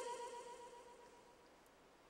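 A woman's voice drawing out the last word of a recited line, a held tone that fades away over about a second into near silence.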